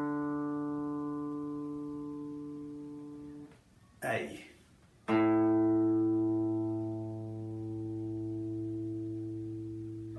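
Open strings of a Les Paul-style electric guitar plucked one at a time and left to ring for a tuning check. The open D string rings and fades away over about three and a half seconds. About five seconds in, a lower open string is plucked and rings on to the end.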